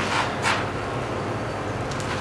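Steady room noise with a faint low hum, and a couple of faint short sounds, one about half a second in and one near the end.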